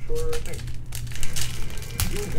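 Foil wrapper of a trading-card pack crinkling as it is torn open by hand, in a quick run of sharp crackles from about a second in.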